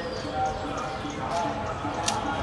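Footsteps on a dirt trail, a few soft knocks, with voices in the background.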